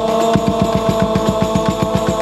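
Rebana frame drums struck in a fast, even rhythm, about seven strokes a second, under a group of voices holding one long sung chord.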